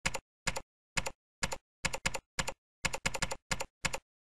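Computer keyboard typing a short name: about a dozen separate keystroke clicks, unevenly spaced, some coming in quick runs of two or three.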